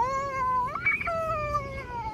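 A small child's long, drawn-out wailing cry. It jumps up in pitch about a second in and then slides slowly down.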